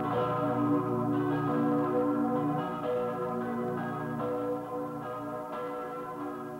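Church bells ringing, with overlapping strikes every second or so whose tones hang on, and the whole slowly growing quieter.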